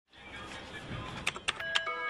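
A low, swelling hum gives way about a second in to computer keyboard keys clicking one by one, with held synth-like music notes coming in near the end.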